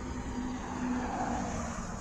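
Road traffic: a car passing, its tyre and engine noise swelling gently in the middle and easing off, over a faint low hum.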